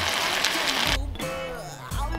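A pot of pasta sizzling on a camp stove as white balsamic vinegar is splashed in, cut off suddenly about a second in. Guitar-led background music follows.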